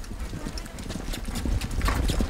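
Hoofbeats of several horses on a sandy trail, an irregular series of dull clip-clops that draw closer.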